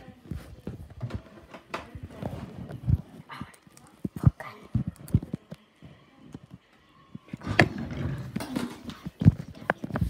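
Loud chewing close to the microphone: irregular wet mouth clicks and low thumps, pausing about five and a half seconds in and starting again about two seconds later.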